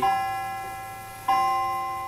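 Clock striking a bell-like chime: two strikes of the same note, one at the start and one a little over a second later, each ringing on and slowly dying away.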